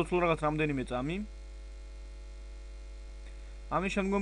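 Steady low electrical mains hum on the recording. A man's voice is heard briefly in the first second and again near the end.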